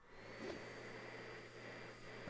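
Faint steady low hum with a thin, steady high whine above it, and a slight blip about half a second in.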